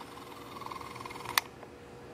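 Faint room tone with handheld camera handling noise, a low steady hum beneath it, and one sharp click a little past the middle.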